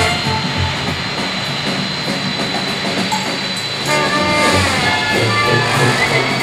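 Music laid over the steady noise of a Boeing 747-400 freighter's four jet engines as the aircraft rolls along the runway, with a thin high whine in the engine noise. The music grows louder and fuller about four seconds in.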